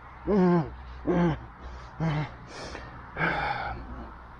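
A man groaning in pain after a mountain-bike crash: three short pitched groans about a second apart, then a longer breathy gasp near the end.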